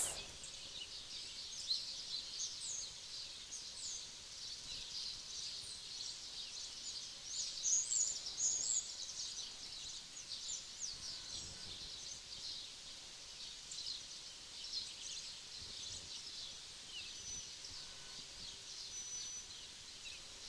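Fairly faint chorus of many small birds chirping high-pitched calls throughout, with a louder flurry of calls about eight seconds in.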